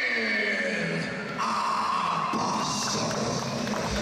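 Music and a drawn-out voice over an arena's sound system, in long held notes that slowly fall in pitch.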